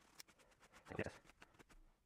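Faint, scattered rustling of a paper towel being wiped over a plastic PEQ box, taking excess wet paint wash off the surface.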